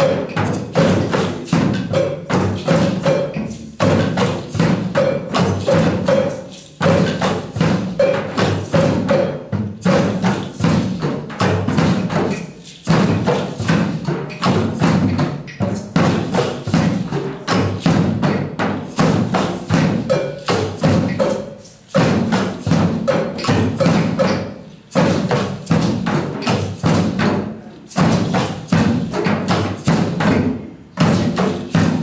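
A drum circle of hand drums, djembes, frame drums and a large double-headed bass drum, played together in a fast, dense rhythm. The drumming breaks off briefly every few seconds and comes straight back in.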